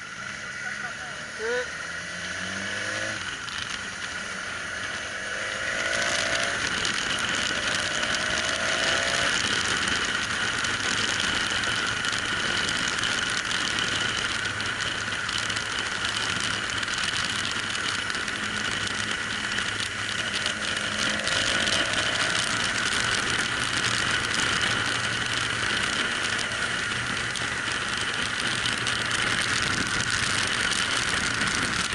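Wind rushing over the microphone of a camera mounted on a moving motorcycle, a steady hiss that gets louder about six seconds in, with the motorcycle's engine underneath and a few short rising engine notes.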